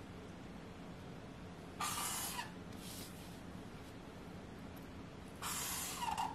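Felt-tip marker drawn along the edge of a ruler across a board, short scratchy strokes: a strong one about two seconds in, a fainter one a second later, and another near the end, over a faint steady hum.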